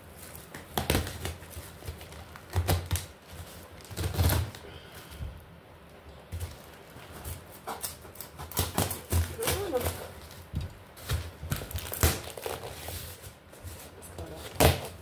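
Utility knife stabbing and slicing through a cardboard parcel box in a series of short, sharp scratchy strokes, with cardboard scraping and tearing as a cut side of the box is pulled open.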